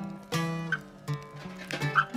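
Acoustic guitar playing a blues song: a strum about a third of a second in, then a few picked notes and chord changes, with a louder strum at the end.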